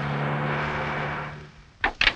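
Car engine and tyres running as the car pulls up, a steady hum that stops about a second and a half in, followed near the end by two sharp clacks of the car door being unlatched and opened.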